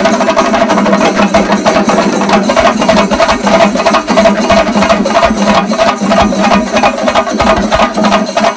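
A large ensemble of chenda drums beaten rapidly with sticks: a loud, dense, unbroken roll of strokes.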